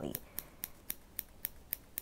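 Small pair of scissors snipping wool fibres, trimming the fur of a needle-felted figure in quick, short cuts, about four snips a second.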